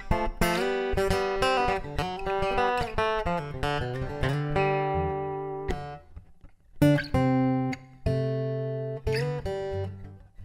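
Acoustic guitar played through a Fishman PowerTap Rare Earth pickup system, a magnetic soundhole pickup paired with body sensors. A run of picked notes leads into a chord that rings and dies away about six seconds in. After a brief pause a sharply struck chord comes in, followed by more notes near the end.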